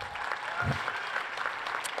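Audience applauding: a short, steady round of clapping from a seated crowd.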